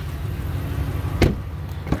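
A 2017 Ram 1500 pickup door shutting once, a single sharp knock a little past halfway, over a steady low outdoor rumble.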